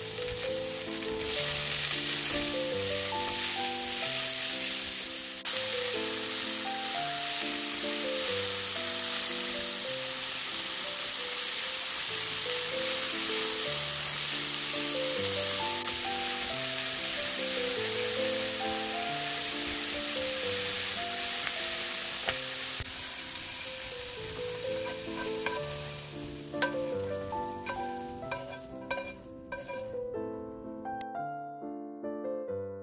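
Bell pepper strips sizzling in hot oil in a nonstick pan as they are stir-fried and stirred with chopsticks, over soft background piano music. Near the end the sizzle dies down and a few knocks sound as the pan is tipped out.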